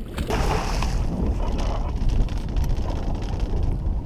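Wind rumbling on the microphone over water around the boat, with some splashing from a large hooked blue catfish at the surface beside the landing net.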